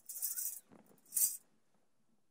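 A small hand-held tambourine jingled twice in short shakes, one at the start and one about a second in, its metal jingles giving a bright, hissy rattle.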